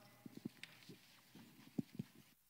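Faint, scattered light knocks and bumps from people handling microphones and shifting on their feet, the strongest near the end.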